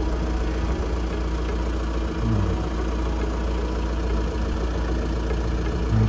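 A steady low mechanical hum with several constant tones, like an engine idling, running unchanged throughout.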